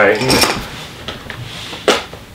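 Metal clinks and knocks from a tufting gun and tools being handled on a floor, with one sharp knock near the end.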